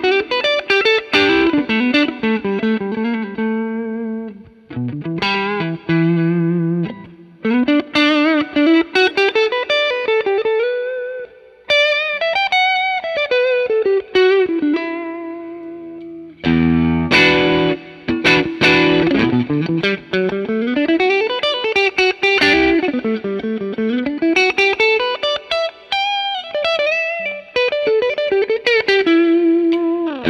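Fender Japan Heritage 50s Telecasters played through overdrive: a lead line with string bends and slides over sustained notes and chords, with a strummed chord ringing out about sixteen seconds in.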